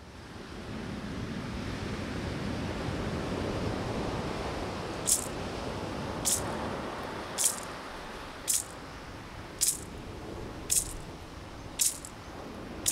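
Surf washing in over wet sand, swelling over the first few seconds and then easing off. About five seconds in, sharp metallic strikes begin at an even pace of about one a second: the ogan, the Haitian iron bell, setting the beat.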